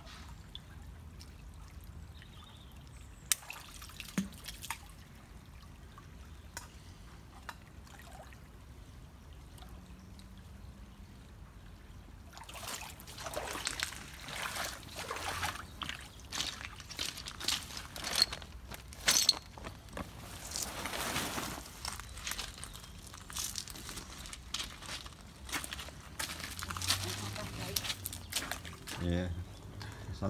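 Shallow river water splashing and sloshing as a hand rummages through the gravel riverbed and rubber boots wade. It is quieter with a few clicks at first, then busier, irregular splashing from about halfway.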